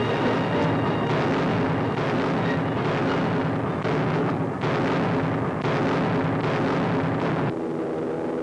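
Artillery barrage: heavy guns firing again and again, the blasts about a second apart and running together into a continuous roar that drops away shortly before the end.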